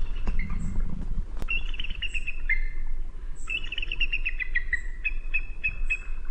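Songbird singing: two bouts of rapid, evenly repeated chirps, the first about one and a half seconds in and a longer one from about three and a half seconds, over a steady low rumble.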